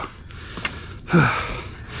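A man's breathy gasp about a second in: a short voiced exhale falling in pitch, out of breath from the effort of hauling an alligator onto the boat.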